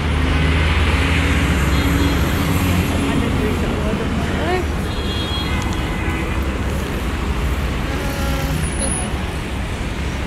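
Road traffic on a busy city street: a steady rumble of passing cars and engines, loudest in the first few seconds as a vehicle goes by.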